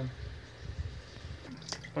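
Quiet low rumble with a couple of light knocks, then water starting to pour from a plastic jug into an aluminium pressure cooker near the end.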